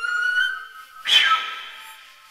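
Concert flute playing a high held note that bends slightly upward, then, about a second in, a sudden loud, breathy accented attack that rings away.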